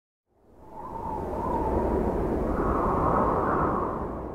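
A swelling whoosh with a low rumble under it, like rushing wind, of the kind laid under an animated title logo. It rises out of silence in the first second and builds to its loudest near the end.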